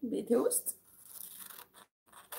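Scissors cutting through a sheet of paper: quiet snips and paper crackle, after a short bit of a woman's voice at the start.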